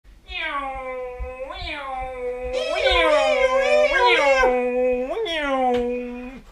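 A long, cat-like wailing voice, about five drawn-out notes, each held for about a second and swooping upward at its start. A second, higher wail joins in the middle.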